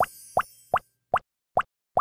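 Cartoon sound effect: a string of short, rising plops or bloops, about two and a half a second.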